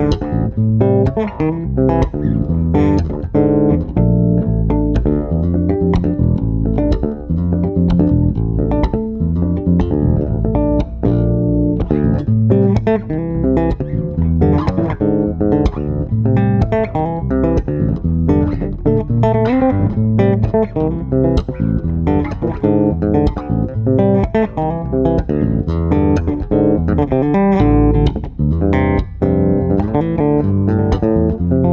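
Custom Paul Lairat Stega five-string electric bass played solo, fingerstyle: a continuous run of plucked notes forming a melodic tune.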